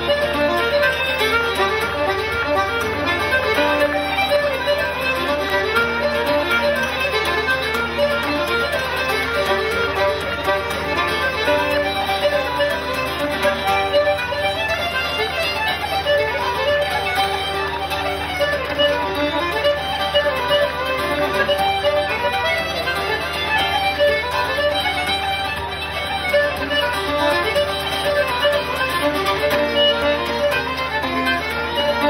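Live Irish traditional music: fiddle and button accordion playing a fast dance tune together over strummed acoustic guitar, steady and unbroken.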